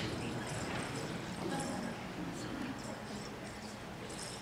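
Quiet hall room tone with faint, low voices murmuring.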